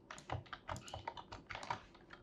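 Typing on a computer keyboard: a quick, irregular run of key clicks as a terminal command is entered.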